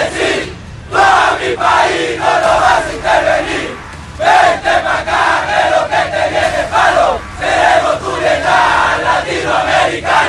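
A large group of men in uniform shouting a rhyming chant in unison, line by line in Spanish, with short breaks between the lines.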